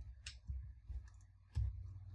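Several quiet clicks and soft knocks from a computer keyboard and mouse on a desk, the loudest about a second and a half in.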